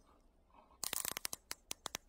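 Nylon cable tie being pulled tight through its head: a quick rattling run of ratchet clicks about a second in, slowing to a few separate clicks as the tie tightens.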